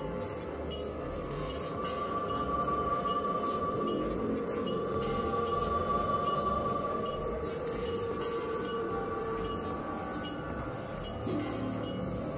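Experimental electronic drone music made on synthesizers: a sustained high tone enters about a second in and holds over a lower drone and a grainy, noisy texture, with faint irregular clicks in the treble.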